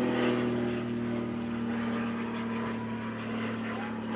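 A steady, low-pitched engine drone with an even hum, holding one pitch and fading slightly over the seconds.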